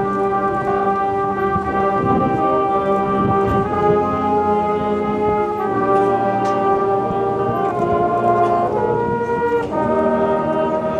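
Marching band brass with percussion playing slow, sustained chords that shift to new chords every second or two, with a few light percussion strokes underneath.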